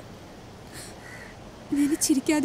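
Faint steady outdoor background hiss. Near the end a woman's voice comes in, clear and pitched.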